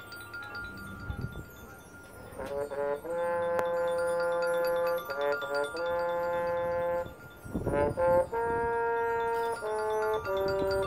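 High school marching band playing: a soft held tone at first, then from about two and a half seconds in the brass comes in with long sustained chords, over mallet keyboards. The chords change a few times with short breaks between, and a brief swell leads into a new chord near the end.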